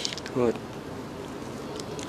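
A short spoken word, then a faint steady buzz for the rest of the moment.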